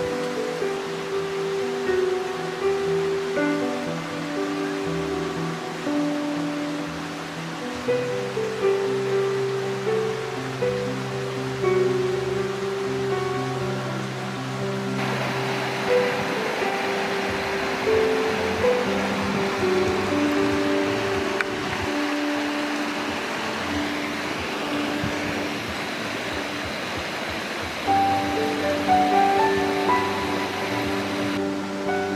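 Background music: a melody of held notes. A steady hiss joins it about halfway through.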